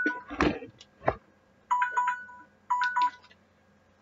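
Electronic beeping tune of two alternating notes, like a phone ringtone, sounding in two short bursts about a second apart. A couple of knocks and rustles come before it, about half a second and a second in.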